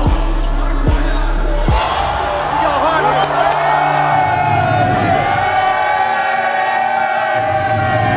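Music with a heavy kick-drum beat, about one thump every 0.8 s, breaks off about two seconds in. A long held vocal over crowd noise follows.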